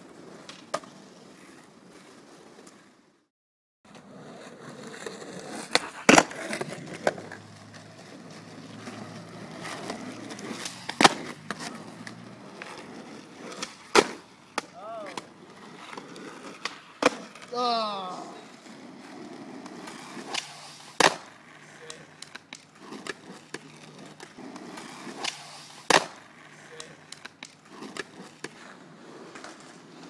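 Skateboard wheels rolling on asphalt with a steady rumble, broken every few seconds by sharp clacks of the board slapping the ground as tricks are popped and landed.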